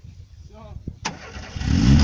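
Lada VAZ 2101's swapped-in 1.7-litre Niva four-cylinder engine being started: a sudden crank about a second in, then the engine catches and runs, getting louder toward the end.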